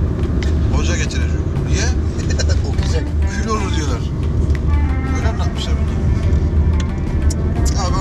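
Steady low rumble of a car's engine and road noise inside the cabin while driving, under a man talking.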